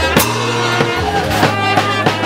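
Music with drums and a bass line on a steady beat, the drum strikes coming about every half second or a little more.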